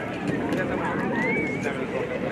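Many voices chattering over each other, children's voices among them, with no single speaker standing out.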